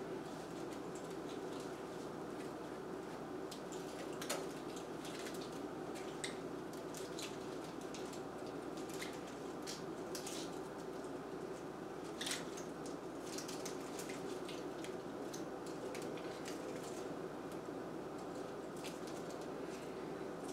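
Faint scattered clicks and rustles of craft wire being twisted around the twigs of a grapevine wreath, over a steady low room hum.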